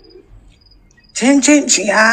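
A woman's voice speaking loudly, starting about a second in. Before it there are only faint, short, high chirps in the background.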